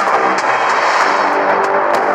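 Loud background music with layered instruments and a few sharp hits.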